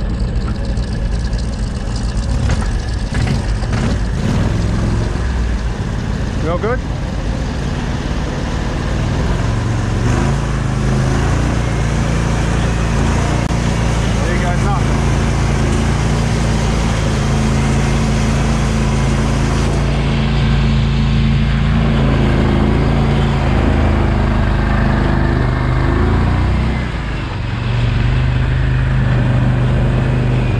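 Engine of an Argo 8-wheel-drive amphibious ATV running under load as it is driven along a muddy track, with knocks from the rough ground in the first few seconds. The engine note holds steady, dips briefly near the end, then picks up again.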